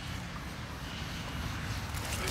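Quiet outdoor background noise: a steady, faint hiss and rumble with no distinct events.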